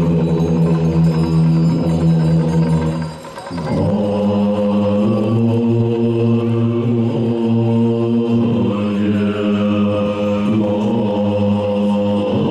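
Tibetan Buddhist monks chanting prayers in unison, low voices holding long steady notes. The chant breaks off briefly a little over three seconds in, then resumes.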